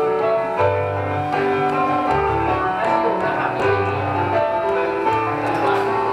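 Piano being played: a melody of held notes over a bass line whose notes change about every half second to a second.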